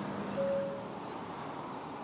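Street traffic noise: a passing car fading away, leaving a steady low hum of road noise, with a brief steady tone about half a second in.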